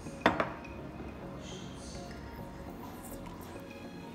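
A single sharp glass clink about a quarter of a second in, over faint background music.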